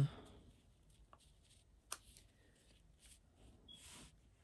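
Faint rustling of a paper pattern piece and folded fabric being placed and smoothed by hand on a cutting mat, with a light click about two seconds in.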